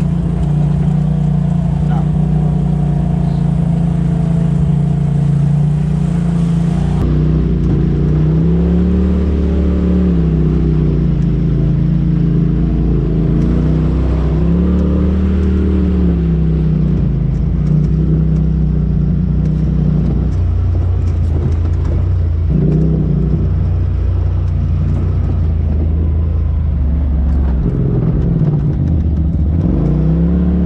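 Polaris RZR side-by-side engine heard from inside the cab, running steadily at first, then rising and falling in pitch several times as the throttle comes on and off along a dirt trail.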